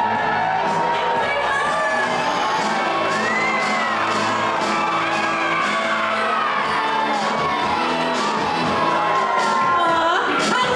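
Dance music playing over a crowd of adults and children cheering, whooping and shouting.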